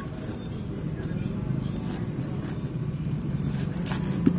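Cardboard parcel being handled and torn open: a few faint crinkles and scrapes of cardboard and packing tape, over a steady low background hum.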